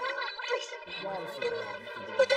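Speech: Japanese anime dialogue with steady background tones underneath, likely mixed with reactors' voices.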